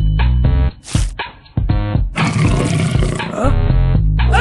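Cartoon soundtrack of music and comic sound effects, with a short drop-out a little under a second in, broken by one sharp, brief hit, then a loud, busy passage again.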